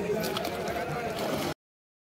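Voices of several people talking and calling out, with a few light clicks, cut off abruptly to dead silence about a second and a half in.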